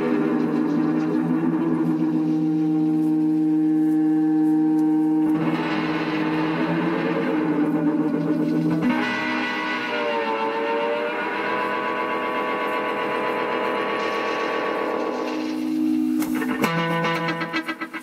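Guitar played through a Multivox Multi Echo tape delay, its repeats blending into long held tones. As the delay-time knob is turned the tape speed shifts and the pitch bends, dipping and rising again about ten seconds in. The held sound changes to a new pitch around five, nine and seventeen seconds.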